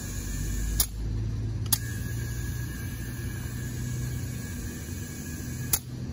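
Car tire being filled with compressed air through a digital inflator gauge: steady air flow with a low hum underneath, broken by three sharp clicks, about a second in, near two seconds and near the end.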